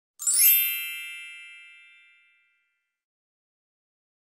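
A single bright chime that rings out once about a quarter second in and fades away over about two seconds.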